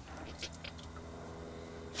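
Quiet room tone with a faint steady hum and a few light clicks about half a second in.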